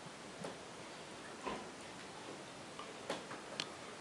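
Quiet room tone with a few faint, short clicks at irregular intervals.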